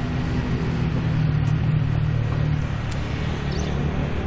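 A motor engine running with a steady low rumble, a little stronger in the middle and easing near the end.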